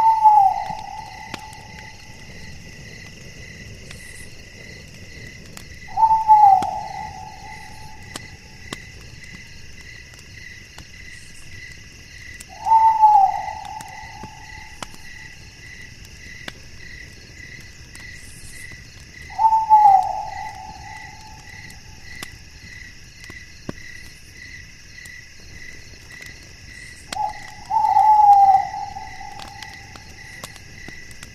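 Night chorus of crickets and other insects trilling steadily, one of them in a slow, even pulse. Five times, about every six and a half seconds, a loud animal call about a second long starts high and falls slightly in pitch.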